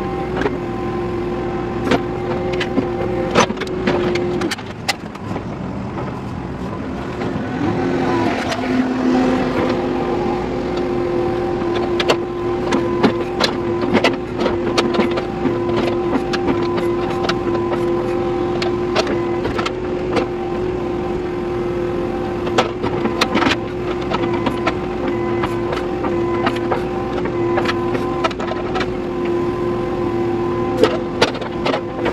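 Backhoe loader's diesel engine and hydraulics running under load, heard from inside the cab: a steady hum that dips about four seconds in and comes back, a lower tone briefly near eight seconds, and frequent clicks and knocks as the bucket digs and the cab rattles.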